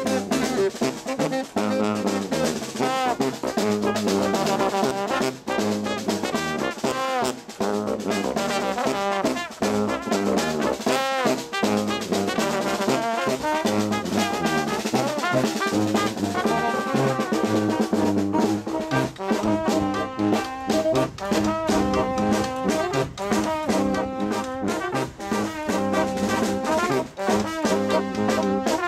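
A brass band playing live while marching: trumpet, trombone, baritone saxophone and sousaphone with a snare drum, all playing one continuous tune.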